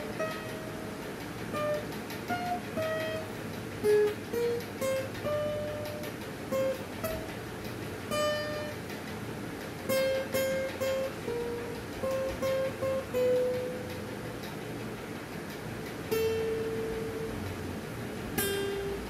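Acoustic guitar picked one note at a time, playing a slow single-note melody with short gaps between the notes. A few notes are held longer in the second half.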